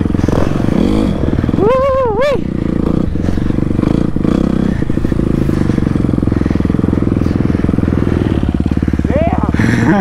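Kawasaki dirt bike's engine running steadily as it is ridden along the track. A short pitched voice sound comes about two seconds in and again near the end.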